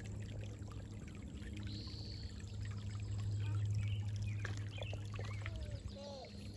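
Shallow creek water trickling over stones, a steady watery sound with small scattered splashes, over a steady low hum.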